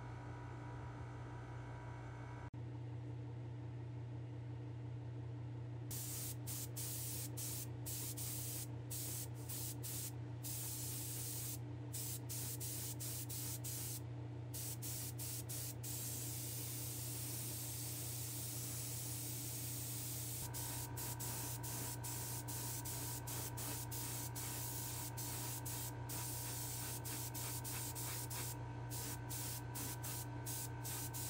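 Paint spraying in many short hissing bursts as a small diecast van body is coated white, over a steady low hum.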